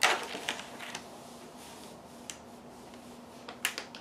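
Clear plastic stamp sheet crackling as a clear stamp is peeled off it: a sharp crackle at the start, then a few scattered clicks, over a faint steady hum.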